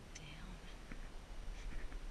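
A faint, soft murmur of a voice early on, with small clicks and a steady low rumble underneath.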